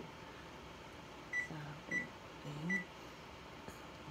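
Frigidaire electric range's oven control panel beeping three times, short high beeps under a second apart, as keypad buttons are pressed to set a bake temperature of 350. The beeps are the sign that the repaired control board is responding to the keys again.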